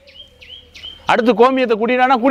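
A bird chirping three times in quick succession, short high notes. About a second in, a man starts speaking, much louder than the bird.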